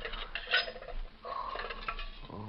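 Metal clinks and rattles of an old coffee pot being handled and its lid opened, a radio-drama sound effect, with a thin steady tone in the second half.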